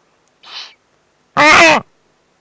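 Eurasian eagle-owl at the nest: a short raspy, hiss-like sound about half a second in, then one loud, clear call lasting under half a second near the end, its pitch arching up and back down.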